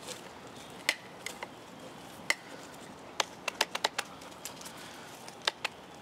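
Scattered sharp clicks and small knocks, a few in quick succession, from a small battery pruning chainsaw being handled against shrub stems; its motor is not running.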